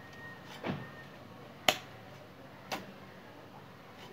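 A hoe striking into garden soil three times, about a second apart, each a short thud-like knock; the middle strike is the sharpest and loudest.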